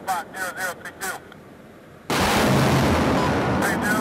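A rocket launching from a Multiple Launch Rocket System launcher: a sudden loud rushing roar about two seconds in that holds for about a second and a half.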